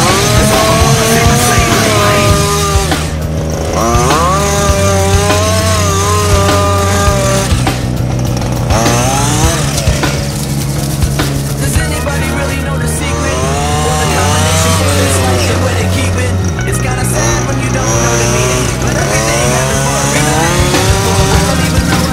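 Background rock music: a sung vocal line over a bass that steps from note to note every second or two, with a distorted, buzzing tone underneath.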